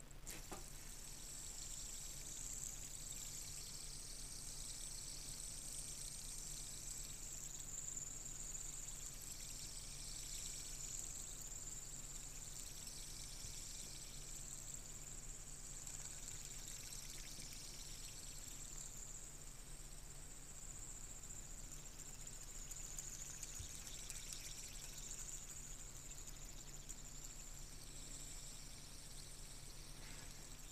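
Brass two-lobed fidget spinner whirring on its bearing as it spins between the fingers: a faint, high whir that swells and fades several times.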